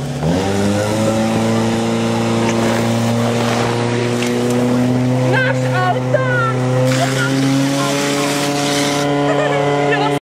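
Fire pump engine revving up in the first second, then running flat out at a steady high pitch as it drives water through the attack hoses to the nozzles. Shouts from people around the course are heard over it.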